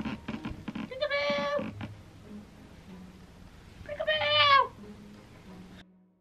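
A domestic cat meowing twice, two drawn-out meows about three seconds apart, the second falling in pitch at its end.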